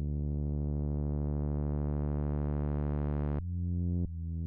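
Sawer software synthesizer bass holding a low note while its low-pass filter slowly opens, so the tone grows steadily brighter over about three seconds. Near the end a new note starts with the filter closed again and opening anew: a filter envelope with a long attack that resets on each note, used for a dark R&B bass.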